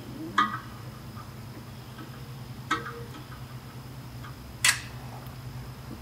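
Three short, light clicks, about two seconds apart, of a caliper touching metal as it is set against a bell housing, over a steady low hum.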